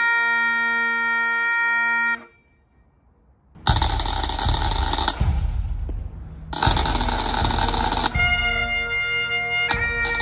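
Highland bagpipes: a solo piper's tune ends on a held note about two seconds in, and after a short silence, drums play two long rolls before the band's pipes strike in near the end.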